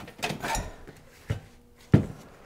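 Bench handling noise: a stainless steel parts tray being shifted and the plastic housing of a cordless polisher being picked up, giving a few short knocks and clatters, the sharpest just before the end.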